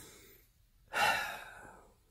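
A man breathing audibly close to the microphone: the end of one breath at the start, then a sighing breath out about a second in that fades away.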